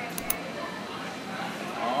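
Quiet indoor lobby ambience: steady low room noise with faint voices in the background and a couple of soft clicks just after the start. At the very end a man begins a drawn-out "aah".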